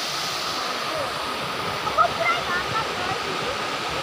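Steady rush of a stream's small waterfall pouring white over a rocky drop.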